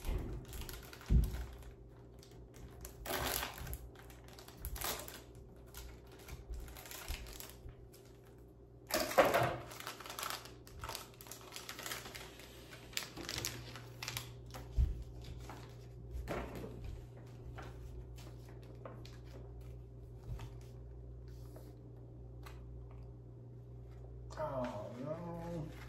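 A clear plastic icing bag crinkling and rustling as it is handled, among scattered light taps and clicks, with the loudest rustle about nine seconds in.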